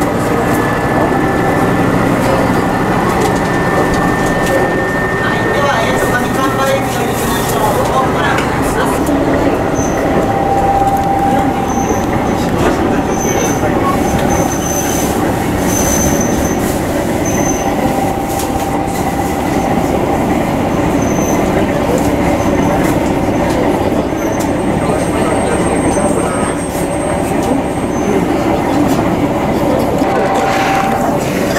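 Diesel railcar running along the line, heard from inside the passenger cabin: a steady, loud noise of engine and wheels on the rails, with a thin high squeal in the first few seconds.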